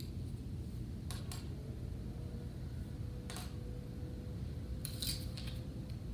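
Wooden popsicle sticks clicking lightly against each other and the tabletop as they are laid in place: a few short taps, about a second in, near the middle and near the end, over a low steady room hum.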